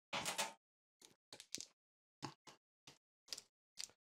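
Faint handling sounds: a few short, light clicks and rustles, spread out, as hands work the top panel of a stainless steel glycol beer chiller, with near silence between them.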